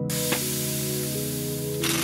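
Logo-animation sound effect over music: sustained synth tones under a loud hissing, spray-like whoosh, with a faint tick about a third of a second in and a brighter swoosh near the end.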